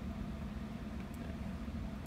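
Steady low machine hum, with a faint click about a second in.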